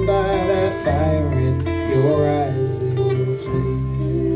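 A live acoustic band playing: strummed acoustic guitar over plucked upright double bass, with a lead melody line that slides up and down in pitch.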